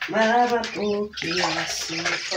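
Water being poured into a plastic cup, with a person humming or singing a few notes over it.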